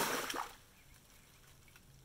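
Short hiss of water and air spurting from a pressurised garden hose as its brass quick shut-off valve is opened to release the pressure, dying away within about half a second.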